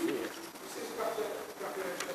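Indistinct, quiet voices away from the main microphone: a few short murmured phrases, fainter than the speech around them.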